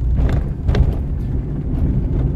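Car driving, heard from inside the cabin: a steady low rumble of engine and road noise, with a single short click under a second in.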